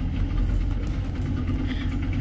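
Outboard motor idling steadily, a low even engine hum.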